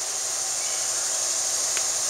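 Steady outdoor background hiss with an even high-pitched tone over it, and one faint click near the end.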